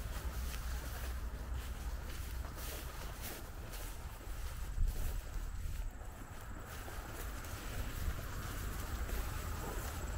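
Wind buffeting the microphone as a steady low rumble, with faint irregular rustles of footsteps through tall dry weeds.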